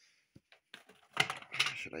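A few light clicks from small objects being handled, then a man's voice starts speaking.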